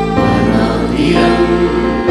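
Live gospel worship music: a man sings into a microphone over sustained band accompaniment, with backing voices, and the chord shifts just after the start.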